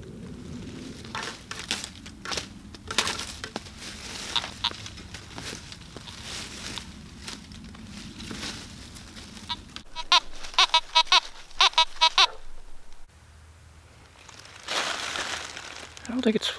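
Footsteps crunching through dry leaves and snapping twigs. Then comes a quick run of about ten short beeps from a Fisher F19 metal detector, the signal of a buried metal target. A brief rustle follows near the end.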